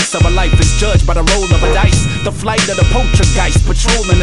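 Underground hip hop track: a rapper's verse over a beat with a heavy bass line and kick drum.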